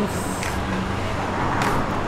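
Steady urban background noise with traffic, a low even hum and hiss with a couple of brief swells.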